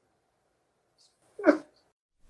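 A man's single brief choked sob about one and a half seconds in, after a near-silent pause: he is crying with emotion.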